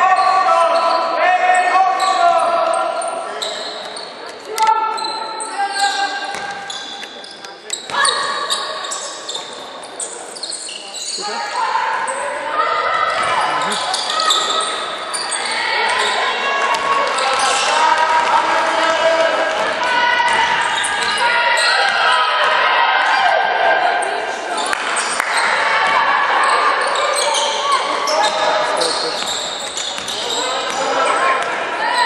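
Basketball game in a large, echoing sports hall: a basketball bouncing on the wooden court, with voices calling and shouting throughout, busiest in the second half.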